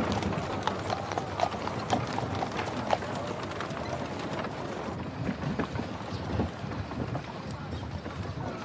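Street ambience: indistinct crowd chatter with a run of sharp clopping knocks, densest in the first few seconds, like hooves or footsteps on a street.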